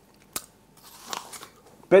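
Hands handling a small round fried food item: one sharp click about a third of a second in, then faint crackling.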